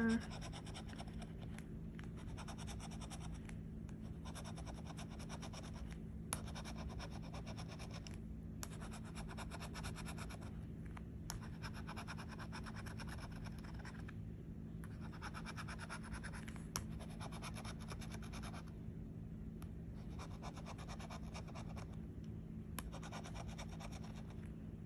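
The edge of a bottle opener scraping the coating off a scratch-off lottery ticket: runs of quick scratching strokes broken by short pauses every few seconds, with a few sharp ticks.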